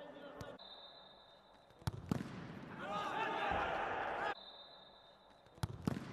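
A futsal ball is kicked hard twice on an indoor court about two seconds in, followed by voices shouting in the hall. Another pair of sharp kicks comes just before the end. A faint steady high tone runs through the first part.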